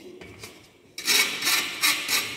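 Metal spatula scraping dry paracetamol granules across the wire mesh of a brass test sieve, a few short strokes starting about a second in, pushing the granules through the number 18 sieve onto the number 22 sieve below.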